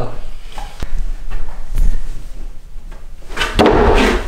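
Indo Board balance trainer in use: the wooden deck knocking and shifting on its roller, with a few sharp knocks and then a louder clattering thump near the end as the board tips and strikes.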